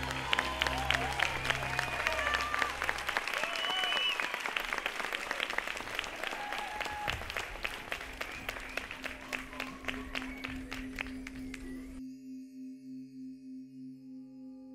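Theatre audience applauding and cheering, with the low end of the music dying away about three seconds in. About two seconds before the end the applause cuts off abruptly and a sustained, slowly pulsing ringing tone of ambient music takes over.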